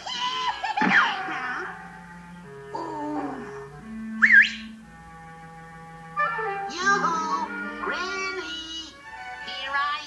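Cartoon orchestral underscore with a witch's high, wavering cackling laughter over it, and a short rising whistle-like slide about four seconds in.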